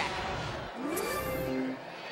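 TV sports broadcast transition sting for an on-screen logo wipe: a rising swoosh about half a second in, a bright shimmering burst just after a second, and a short held musical tone.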